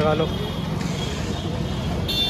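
Steady street traffic noise: a continuous hum of passing vehicles with no distinct events.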